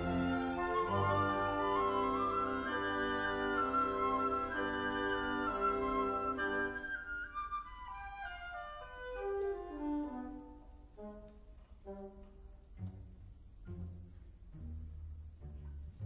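Instrumental background music of held notes, with a falling run of notes about seven seconds in. After that it thins out to sparse, quieter notes.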